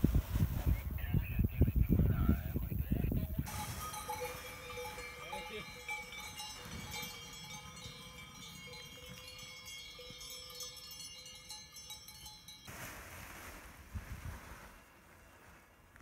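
Wind buffeting the microphone for the first few seconds, then cowbells on an alpine pasture ringing with many overlapping tones. The bells cut off suddenly near the end, giving way to more wind noise.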